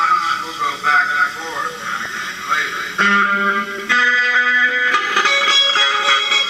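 Electric guitar playing. From about three seconds in it holds steady, sustained chords.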